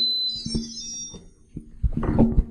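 Short run of high electronic beeps from a smart pressure cooker: one held tone, then several quicker tones at shifting pitch. The cooker is sounding off because its recipe file has been modified.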